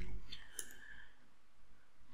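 A single computer mouse click, advancing the presentation to the next slide, over faint room tone.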